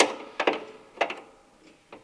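A few sharp clicks about half a second apart, each quieter than the last: a spanner on the bolts of a Volvo 240's bonnet hinge as they are nipped up just enough for the bonnet to hold itself.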